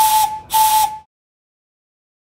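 Steam locomotive whistle giving two short blasts, each one steady note with a hiss of steam, the second cutting off about a second in.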